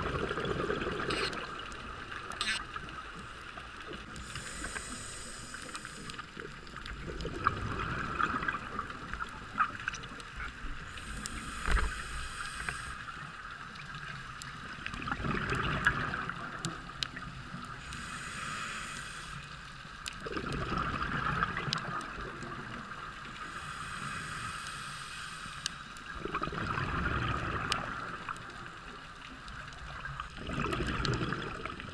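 Scuba regulator breathing heard underwater: a hiss on each inhalation alternating with the bubbling of each exhalation, in a slow, even rhythm of about one breath every six seconds. A few sharp clicks, about one and two and a half seconds in and near the middle.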